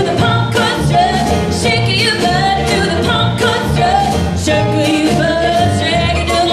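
A traditional New Orleans jazz band playing a lively number live, with drums and a bass line pulsing about twice a second under wavering melody lines.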